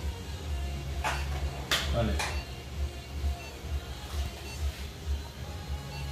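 Three short rustling clicks from medical supplies being handled, about a second apart early in the stretch, over a steady low hum.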